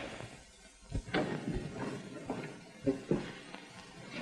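A quiet pause on an old film soundtrack: steady faint hiss with a few soft, scattered knocks and scuffs.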